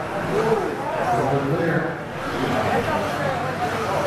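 A race announcer's voice over the PA, echoing and unclear in a large hall, mixed with the whine of electric RC buggy motors rising and falling in pitch as they speed up and slow down.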